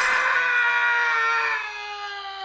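A person's long, held scream, sinking slowly in pitch and fading away near the end.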